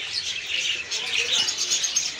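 Caged cockatiels chirping together, many short high calls overlapping in a continuous chatter.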